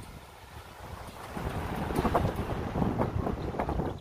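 Wind gusting over the microphone, a low, uneven rumble that grows stronger about a second and a half in.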